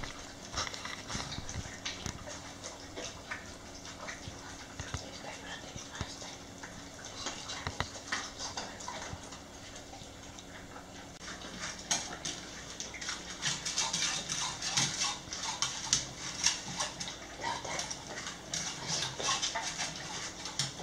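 Dogs eating from stainless steel bowls: wet, clicky chewing and lapping, with the food and tongues working against the metal. It gets busier and louder in the second half.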